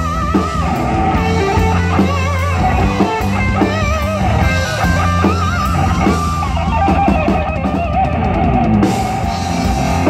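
Live rock band playing an instrumental passage with no vocals. An electric lead guitar plays wavering, vibrato-laden notes over bass guitar and drum kit, with a quick run of cymbal hits about seven seconds in.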